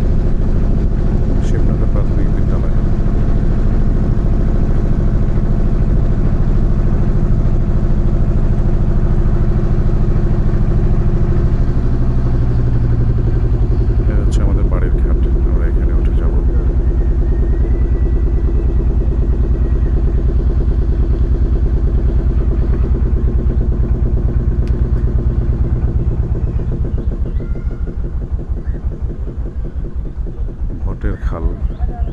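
Engine of a motorised wooden river boat running steadily under way. Its pitch shifts about twelve seconds in. Near the end it slows down, so that its separate firing strokes can be heard as it throttles back.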